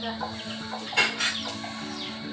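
Soft background music with held notes, and a brief scrape of a metal spoon against a ceramic plate of cooked fish about a second in.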